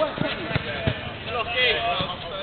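Footballers shouting and calling to each other during play, with three dull thuds of a football being kicked in the first second.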